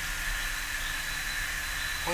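Steady background hiss with a faint, thin, steady high tone and a low hum underneath: the noise floor of the recording, heard in a pause in speech.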